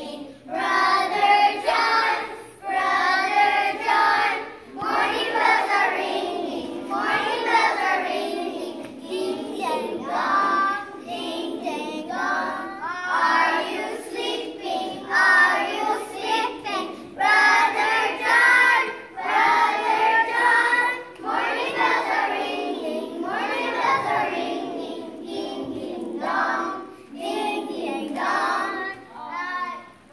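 A group of children singing a song together, phrase after phrase.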